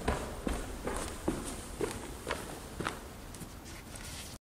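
Footsteps on a hard floor at a walking pace, about seven steps, over a low steady rumble.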